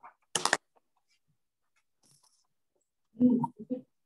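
A brief clattering burst of a few quick knocks about a third of a second in, then an indistinct person's voice near the end.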